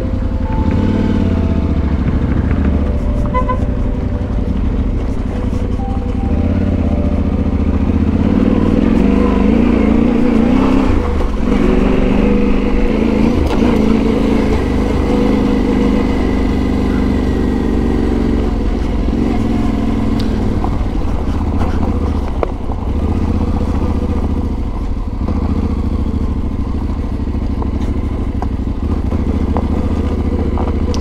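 Yamaha Ténéré 700's parallel-twin engine running as the bike is ridden at low speed on dirt and gravel, a little louder through the middle stretch.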